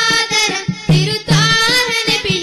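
Young voices singing a Malayalam group song in unison with vibrato, over a regular low percussion beat.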